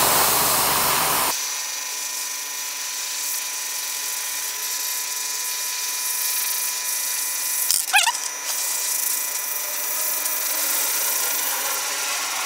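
Iwata Eclipse airbrush spraying primer, driven by its compressor: a steady hiss of air carrying faint held whining tones, rougher and fuller for the first second or so before settling. A brief wavering squeal about eight seconds in.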